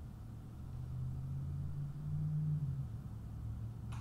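A steady low background rumble or hum, swelling a little about two seconds in, with a single short click near the end.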